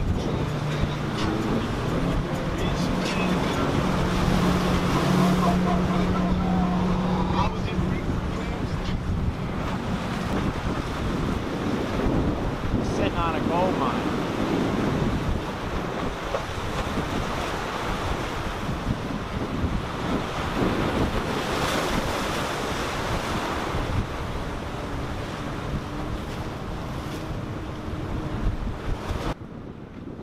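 Surf and wind buffeting the microphone, with the steady drone of a power catamaran's twin outboard motors running past during the first ten seconds or so.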